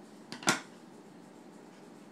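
A single sharp snip of scissors closing on wired fabric ribbon about half a second in, with a smaller click just before it; otherwise quiet room tone.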